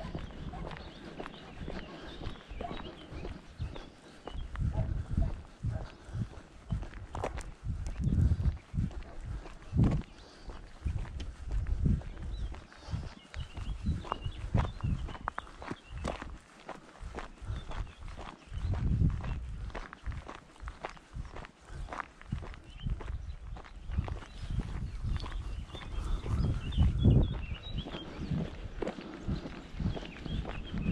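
Footsteps of a person walking on a gravel and dirt track, an uneven run of low thuds.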